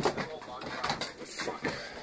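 Camera handling noise: a run of irregular knocks and scrapes as the camera is jostled by a dog and steadied by hand.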